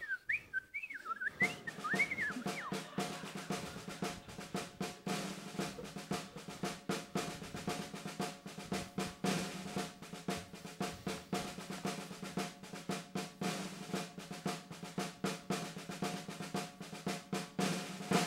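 Snare drum roll played over the sound system as the cue for a firing-squad execution, running steadily from a second or so in to the end. It opens with a few short high whistled glides.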